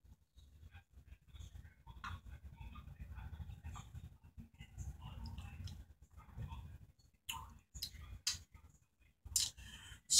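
A man gulping beer from a glass mug: faint swallowing sounds in quick, irregular succession for about six seconds. A few short, sharp clicks follow near the end.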